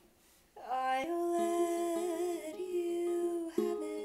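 A woman's voice humming a melody over a capoed Hola! ukulele played note by note, starting about half a second in after near silence.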